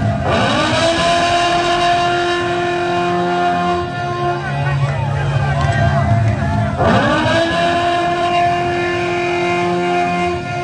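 A revving-engine-like sound in a music soundtrack: a tone sweeps up quickly and then holds steady, twice, about seven seconds apart, over a steady low bass.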